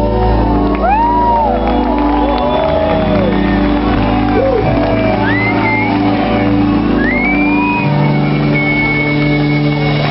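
Live rock band holding a sustained chord on stage while the audience shouts and whoops, with a long high whistle near the end.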